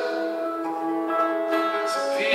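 Live music: a slow song with acoustic guitar and long held notes that change pitch a few times.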